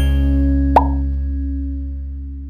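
An intro jingle's final low chord ringing on and slowly fading, with one short pop sound effect a little under a second in.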